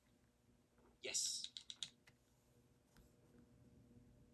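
A quick flurry of clicks at a computer about a second in, lasting under a second, as a video on screen is skipped ahead; otherwise faint room tone.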